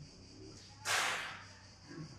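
A single short whoosh of noise that starts suddenly a little under a second in and fades within about half a second.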